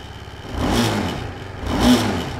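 BMW G310RR's single-cylinder engine revved twice from idle, each blip rising and falling back. Under load it sets off a vibration rattle, which the owner traces to the loose front number plate.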